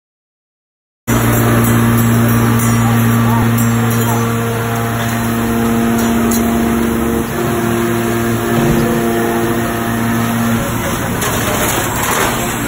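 Steady machinery hum with a low drone and a few higher steady tones, starting suddenly about a second in after silence.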